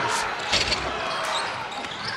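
A basketball bouncing on a hardwood gym floor during live play, with a low thud about half a second in, over steady crowd noise in a full gym.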